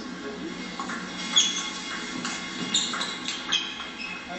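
Table tennis rally in a sports hall: sharp shoe squeaks on the court floor, the loudest about a second and a half in, then a run of quick clicks from the ball off bats and table.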